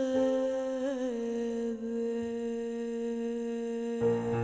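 Female pop singer holding the final note of a Spanish ballad, the last syllable of "suceder", as one long sustained tone. It wavers briefly about a second in and dips slightly in pitch near two seconds.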